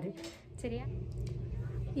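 A woman's voice breaks off, a short syllable follows about half a second in, then a steady low room hum with no speech.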